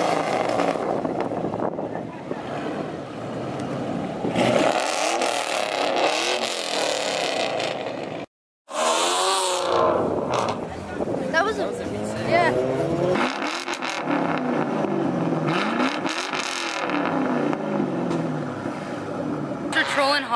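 Car engines revving and driving past across a parking lot, their pitch repeatedly rising and falling. About eight seconds in, the sound cuts off abruptly for a moment and resumes.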